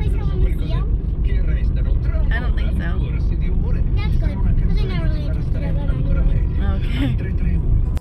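Steady low rumble of a car being driven, heard from inside the moving vehicle, with quieter conversation over it.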